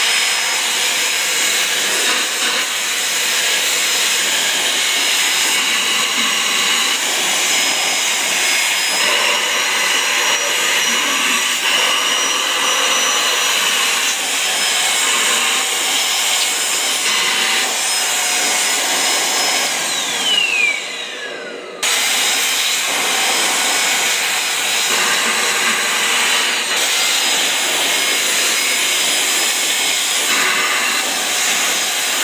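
AGARO 33423 handheld dry vacuum cleaner running steadily with a high whine as its crevice nozzle is drawn over fabric to suck up hair. About twenty seconds in, the motor winds down with a falling whine, then is suddenly back at full speed.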